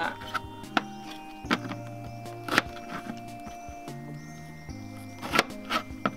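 Background music with held notes, over about five sharp knocks of a chef's knife chopping down through the sides of a pineapple onto a plastic cutting board.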